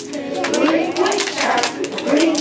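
A group of young children's voices, with scattered, irregular hand claps from the children.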